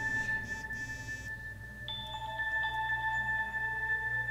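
Electronic ringtone of an incoming call: steady chime tones held throughout, with a higher tone joining about halfway through.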